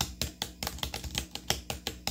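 Fingers typing rapidly on a laptop keyboard: a quick, uneven run of key clicks.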